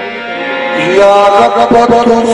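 Qawwali music: a harmonium holds steady chord notes while a male voice slides up into a sung phrase about a second in. A few drum strokes follow near the end.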